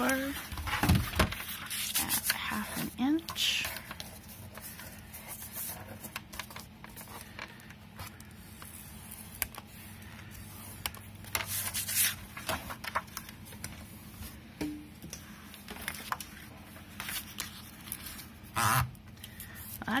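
Kraft paper envelope being handled and slid on a cutting mat, with scattered sharp taps and scrapes from a scoring tool against a plastic scoring board.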